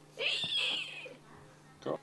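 A person's high-pitched squealing cry, a falsetto 'whee!', lasting about a second, followed by a brief short sound near the end.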